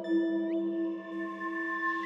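Ambient meditation music: sustained drone tones held steady, with a higher tone entering at the start and bending briefly upward about half a second in.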